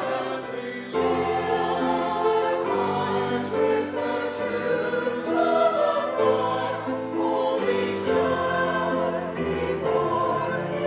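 Small mixed choir of men and women singing in harmony, holding long chords that change every second or two.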